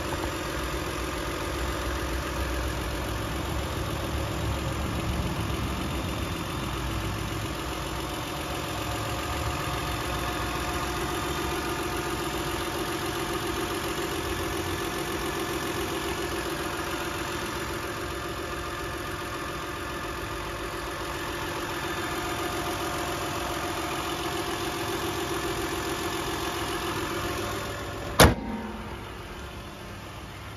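Toyota Alphard's 1MZ-FE 3.0-litre V6 idling steadily with the hood open. Near the end a single sharp bang, the hood being shut, after which the idle sounds quieter and muffled.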